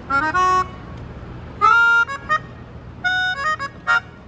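A Yamaha Pianica P-37D melodica being played: a short phrase of chords in three brief groups with pauses between, the last ending in a quick stab.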